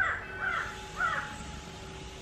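A crow cawing three times, each call about half a second apart, then falling quiet.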